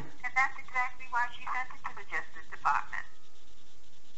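Speech only: a faint, thin voice coming through a telephone line, talking for about three seconds and then stopping, leaving only line hiss.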